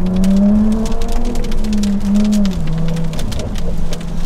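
Jaguar F-Type's supercharged 3.0-litre V6, heard from inside the cabin, pulling with its note rising over the first half second, holding, then dropping about two and a half seconds in and running on steadily. Raindrops tick on the car throughout.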